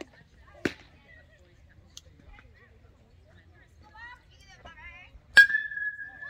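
Metal baseball bat hitting a pitched ball for a home run: a sharp ping near the end that rings on as a steady high tone for about a second. A smaller single smack comes about half a second in, with faint voices in between.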